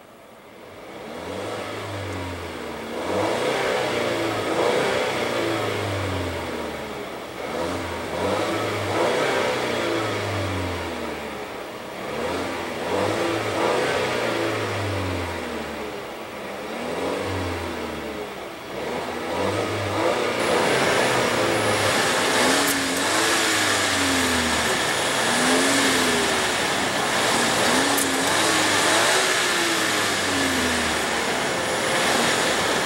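2016 Volvo XC90's 2.0-litre supercharged and turbocharged inline-four, in Park, revved over and over in quick blips, the engine speed rising and falling about every second or two. The later revs, from about twenty seconds in, are heard outside at the exhaust.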